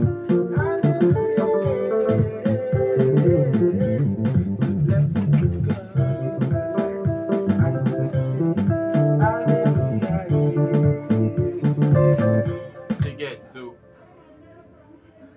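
A makossa groove played with both hands on an electronic keyboard over a backing loop, with plucked, guitar-like tones and bass. The music fades out near the end.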